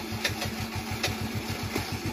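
Small scooter engine idling steadily just after being started, an even putter of about fourteen firing pulses a second.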